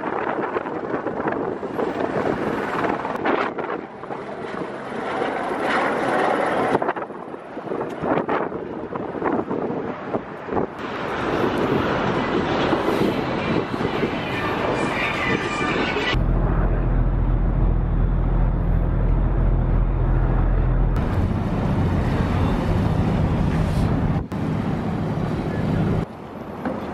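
Outdoor waterfront noise with wind on the microphone, broken by several cuts. From about two-thirds in, a ferry's engine runs with a steady low drone.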